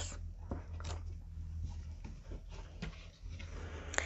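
Faint soft taps and rustles of playing cards being handled and slid together on a cloth-covered table, over a steady low hum.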